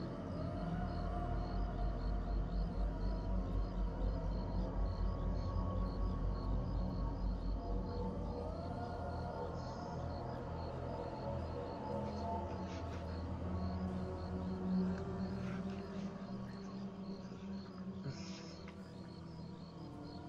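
Horror-film soundtrack music: sustained low tones with a pulsing throb over the first several seconds, with crickets chirping steadily in the background.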